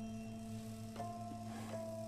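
Background music: a steady low drone under held tones, with a sparse single note entering about a second in and another near the end.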